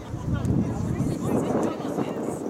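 Indistinct voices of people talking and calling out, getting louder about half a second in.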